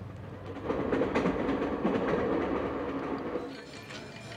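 Passenger train passing, a rumble with repeated clacks of the wheels on the rails, swelling up about half a second in and fading away near the end.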